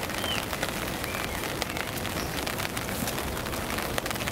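Steady rain pattering on a camping tarp overhead, a dense scatter of small drop ticks over a constant hiss.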